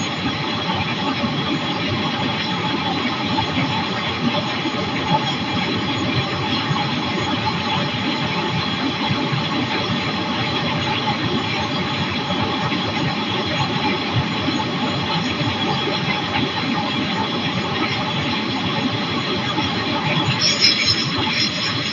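Flexwing microlight trike in steady cruise: the even drone of its engine and pusher propeller mixed with a rush of airflow.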